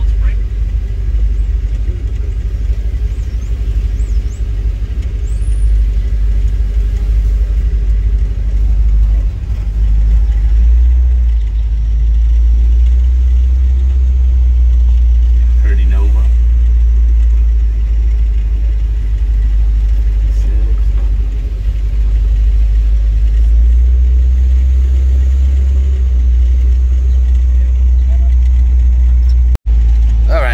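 Old pickup truck's engine heard from inside the cab as it creeps along in slow traffic: a heavy low rumble that grows louder about a third of the way in.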